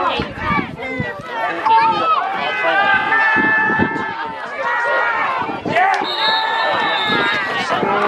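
Several voices shouting and yelling over one another at a football game, with long drawn-out yells in the middle and again near the end.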